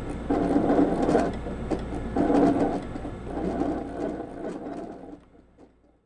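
Pen-holding handwriting robot running in short stretches with brief pauses, its motors working as the pen moves over paper; the sound fades out about five seconds in.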